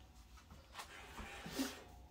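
Faint clatter of pans being handled in the drawer under a gas oven: a few light knocks, loudest briefly about one and a half seconds in.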